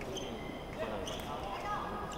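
Busy sports-hall ambience: crowd chatter, with several short high squeaks and a few light knocks from fencers' shoes working on the pistes.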